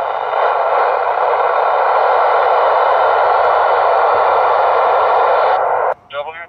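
Steady, loud receiver hiss from an FM ham radio tuned to an amateur satellite's downlink, with faint steady tones running through it. It cuts off suddenly near the end.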